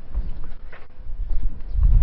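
Footsteps of a person walking: irregular low thuds with faint clicks.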